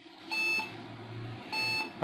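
Lenovo ThinkCentre desktop sounding two short POST error beeps, about a second apart, over a low steady hum. The PC powers on but gives no display, a fault most often (a sixty to seventy percent chance) down to dirty RAM contacts.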